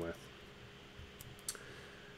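Low room tone with a couple of short clicks about a second and a half in, a computer click advancing the presentation to the next slide.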